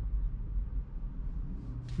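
Faint, steady low rumble inside an electric car's cabin as it rolls slowly to a stop, with no engine sound. What is heard is road and cabin noise.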